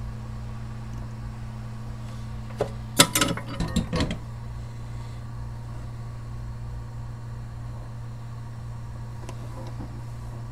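Steady low electrical hum of repair-bench equipment, with a short burst of clicks and clatter about three seconds in as a tool or part is handled on the workbench.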